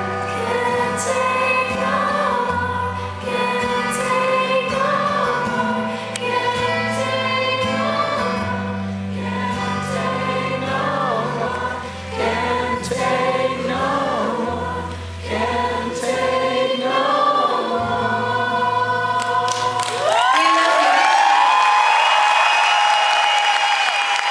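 Live female lead vocal with accompaniment, sung through a stage PA in a theatre, holding the final phrases of the song. About twenty seconds in the music stops and the audience breaks into loud cheering, whistling and applause.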